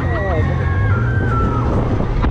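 Riders screaming and squealing on a KMG Rock It swing ride as it carries them through an inversion, one scream held for about a second and a half and dropping in pitch. Heavy wind noise on the seat-mounted action camera's microphone runs under the screams.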